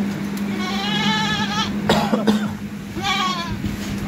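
Goats bleating twice: a long quavering bleat about half a second in and a shorter one at about three seconds.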